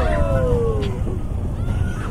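A rider's drawn-out scream, sliding down in pitch and fading out about a second in, over the steady low rumble of a roller coaster train running on its track with wind on the microphone.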